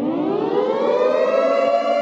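Siren sound effect winding up: a rising wail that levels off into a steady held tone about a second and a half in.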